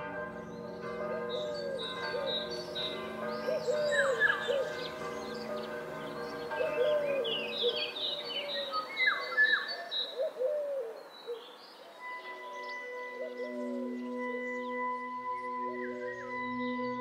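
Church bells ringing with birds singing and calling over them, the chirps thinning out about eleven seconds in. Soft ambient music with sustained held notes comes in at about twelve seconds.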